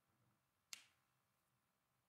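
Near silence broken by a single sharp click about three-quarters of a second in.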